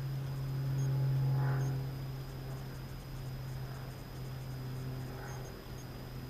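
Steady low hum with a faint, thin high-pitched whine above it.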